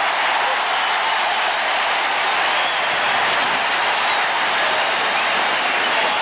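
Large stadium crowd cheering, a steady loud wash of many voices, in response to the home team recovering a fumble.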